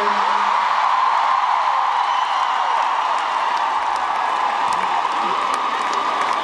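Large arena crowd, mostly young women, cheering and screaming all at once in a steady, high-pitched wall of sound with scattered clapping, their answer to a call from the stage.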